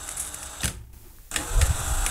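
Cordless drill (DeWalt XRP) running at speed, spinning a steel washer blank on a bolt. It drops away for about half a second near the middle, then runs again louder.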